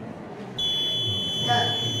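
Electronic buzzer on an Arduino-controlled railway-crossing warning model switching on about half a second in and sounding a steady high-pitched tone, set off by the sensor detecting the approaching model train.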